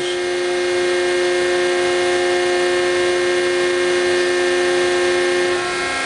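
Hydraulic pump and motor of a 200-ton hydraulic press running with a steady whine as the ram travels down in fast close. Its strongest tone drops away shortly before the end, as the press changes over toward slow pressing.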